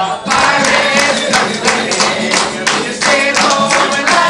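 An audience claps in time, about three claps a second, starting a moment in, while a crowd sings along to a song.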